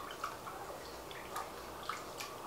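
Wet bread-dough ingredients (hot water, oil, honey and egg) being stirred in a bowl: faint liquid sloshing with a few light clicks of the utensil against the bowl.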